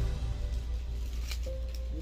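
Background music: sustained notes over a steady low drone. A few faint rustles from a ribbon bow being handled come in about halfway through.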